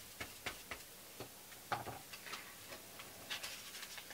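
A paintbrush dabbing and stroking matte gel medium onto the back of a paper magazine cutout: faint, irregular taps and a few short brush strokes.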